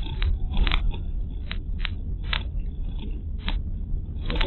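Car driving on a country road, heard from a dashcam inside the cabin: a steady low road rumble with irregular sharp clicks and rattles, several a second.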